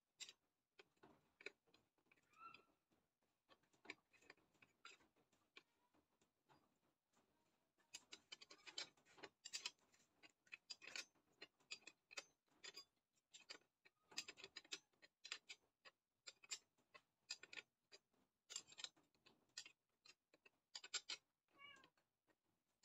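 Faint, irregular clicks and taps of a metal hand tool working on a brush cutter's engine, coming thicker after the first several seconds. Two short high-pitched calls are heard, one about two seconds in and one near the end.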